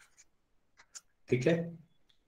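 A few faint, short scratches and taps of a pen writing, followed by a man's short spoken phrase.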